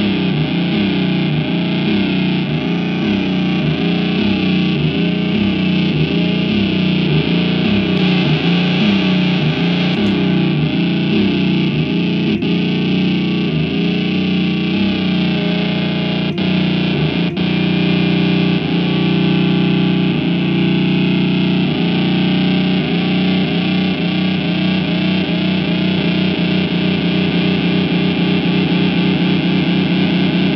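Squier Bullet Stratocaster feeding back through distortion and effects pedals into the amp, making a loud, distorted sustained drone. A pitch swoop repeats about twice a second; the sound settles into a steadier drone a little past the middle, then the swoops return.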